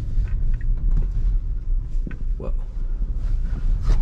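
Steady low road and tyre rumble heard inside the cabin of a Tesla Model Y, an electric car with no engine sound, as it drives along a wet city street.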